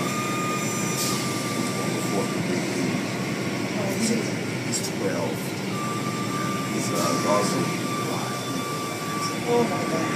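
Car wash machinery running with a steady noise and a thin high whine. The whine stops after about two seconds and comes back about six seconds in. Faint voices are in the background.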